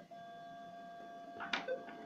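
A faint steady tone with a few higher overtones, and a single short click about one and a half seconds in as hands handle a metal detector and a headphone jack adapter.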